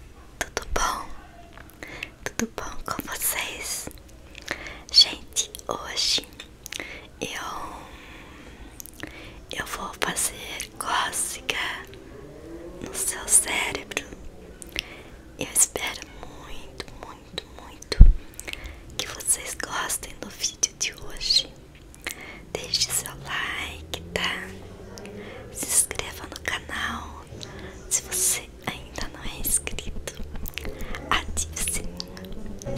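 A woman whispering close to a microphone, with one sharp thump on the microphone about eighteen seconds in.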